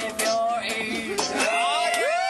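Singing with music, ending in one long held, wavering sung note that starts about three-quarters of the way through.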